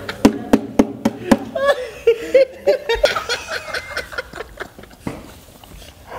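Several people laughing heartily in quick bursts, the laughter dying down near the end.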